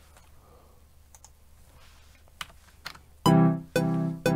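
A few faint mouse clicks, then, about three seconds in, a sampled software piano starts playing repeated chords about twice a second as the sequencer plays back a track that follows the chord track.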